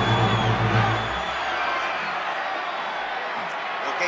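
An orchestra's final held chord, with a deep low note underneath, cuts off about a second in, leaving steady arena crowd noise.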